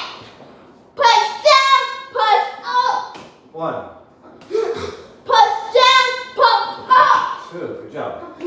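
A child's high voice calling out short words in a quick, regular run of syllables.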